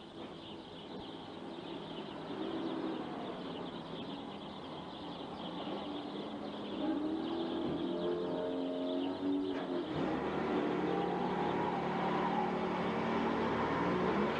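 A car engine running and growing louder, with a short knock about ten seconds in, after which the engine settles into a steady hum.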